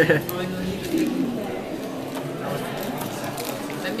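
People talking in German, mostly indistinct, with a louder word right at the start.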